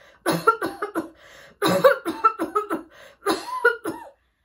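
A woman acting out a character's coughing fit, a series of voiced coughs in three bouts, the middle one the longest.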